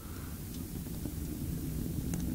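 Fire burning in a small potbelly stove: a low steady rumble that grows slightly louder.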